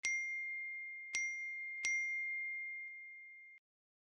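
Bell-like 'ding' sound effect struck three times: once right away, again about a second in, and a third time under a second later. Each strike rings on at the same clear pitch and fades slowly. The ringing then cuts off abruptly about three and a half seconds in.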